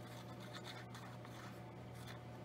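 Faint scratching of a white-glue squeeze bottle's nozzle drawn along the edges of a thin copy-paper cut-out, with light handling of the paper, over a low steady hum.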